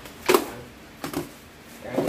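Three short clicks and knocks spaced about a second apart: a metal spoon tapping and scraping a plastic jar of seasoning as it is spooned into a pot of soup.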